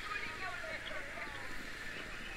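Quiet open-air background with faint, distant voices and no distinct loud sound.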